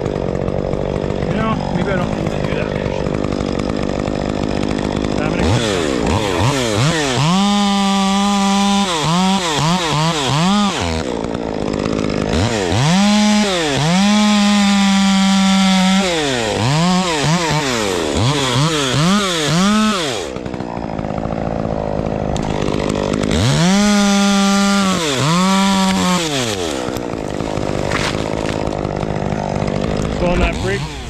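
Two-stroke gas chainsaw cutting a large pine branch. It idles at first, then is revved up and down again and again and held at full throttle in long stretches under load. It drops back to idle briefly in the middle before a second bout of cutting.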